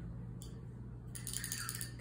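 Low steady room hum with a small click, then about a second of light clinking and rattling near the end, as of small hard objects being handled.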